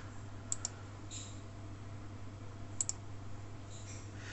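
Two pairs of faint, quick clicks from a laptop's pointer button, about two seconds apart, as folders are opened in a file-browse dialog, over a steady low hum.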